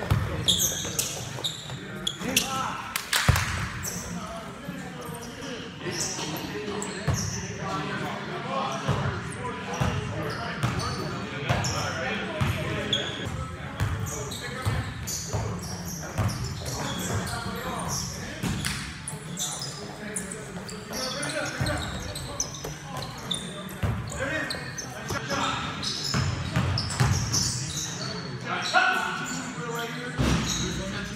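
Pickup basketball game in a gym: a basketball bouncing on the court in irregular knocks, players' footsteps and shouted voices, all echoing in the large hall.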